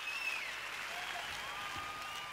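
Concert audience applauding, with a few high, sliding whistles above the clapping.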